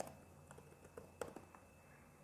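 Computer keyboard typing: a quick run of faint, irregular keystrokes, the loudest just over a second in, stopping about halfway through.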